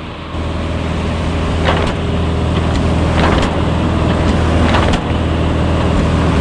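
Light aircraft piston engine and propeller drone heard in the cabin, mixed with air rushing in through a door that has come ajar in flight. The rush gets louder a moment in, and brief sharper rattles come about every second and a half.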